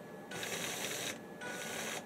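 Rubbing hiss of a clear plastic electronics box being turned quickly by hand on a cloth-covered bench, in two stretches: one short, then one that runs on near the end.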